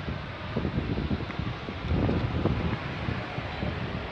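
Wind buffeting the microphone, a fluctuating low rumble over steady outdoor background noise.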